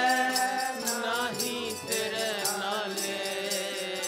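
Gurbani kirtan: a voice sings a devotional line over a harmonium's steady reed chords, with a metallic jingling beat about three to four times a second.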